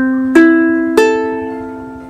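Ukulele's open strings plucked one at a time in standard GCEA tuning: the C string is still ringing as the E string is plucked about a third of a second in, then the A string about a second in, each note left to ring and fade.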